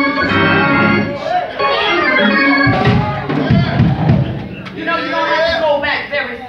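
Church organ playing sustained chords, with a voice over it.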